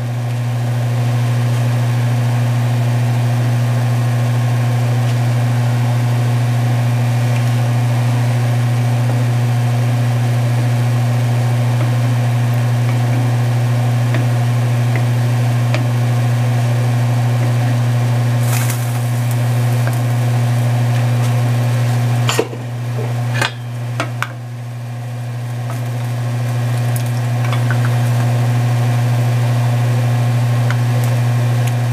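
A loud, steady low electrical hum runs throughout, with a few quiet knocks of a wooden spoon against an enamelled cast-iron pan about three-quarters of the way in as the soup is stirred.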